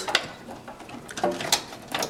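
Computer cables and plastic connectors being handled and plugged in inside a metal PC case, with two sharp clicks, one near the start and one about one and a half seconds in. A brief pitched sound comes just before the second click.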